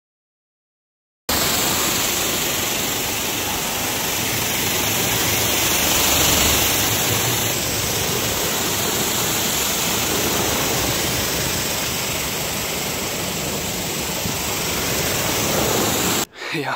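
High-pressure washer jet spraying water onto a car's body: a steady, loud rushing hiss that starts suddenly just over a second in.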